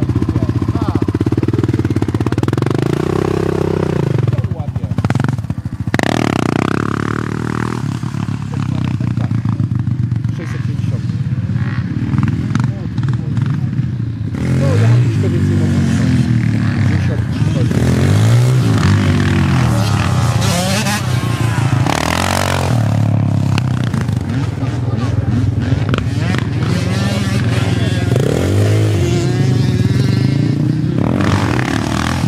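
Sport quad (ATV) engines being ridden on a dirt track, the revs climbing and dropping over and over as the throttle is worked.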